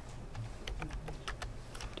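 Several separate keystrokes on a computer keyboard as a number is typed into a spreadsheet cell and entered.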